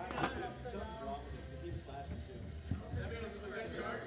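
Indistinct voices of people talking, with a sharp click about a quarter second in and a lighter knock a little past halfway.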